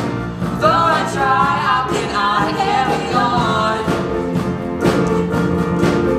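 A solo voice singing a pop ballad melody over steady instrumental accompaniment in a stage musical.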